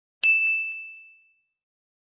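A single bright notification-bell ding sound effect, struck once and ringing away over about a second.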